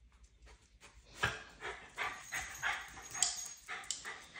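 Miniature schnauzer giving short, high yipping barks, about three a second, starting about a second in after a couple of faint ones.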